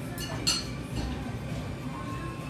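Two sharp clinks of tableware, dishes or cutlery, the louder one about half a second in, over background voices and music.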